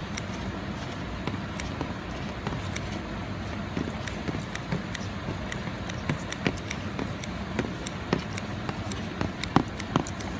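Steady rush of running water, with scattered light clicks and taps throughout as wet fish are handled on a metal tray.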